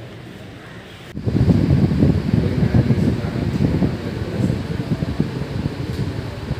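Low, uneven rumble of moving air buffeting the microphone. It starts abruptly about a second in, over faint room tone before it.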